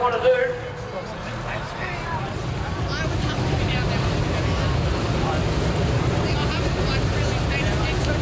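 Low, steady engine rumble of idling vehicles, a little louder after about three seconds, with a voice in the first half second and fainter distant voices over it.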